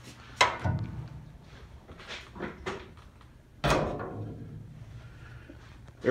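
Two loud knocks, about three seconds apart, each with a short ringing tail, and a few lighter clicks between them.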